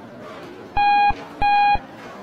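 Lift overload alarm beeping twice, two short steady tones in quick succession: the car is carrying more than its rated load.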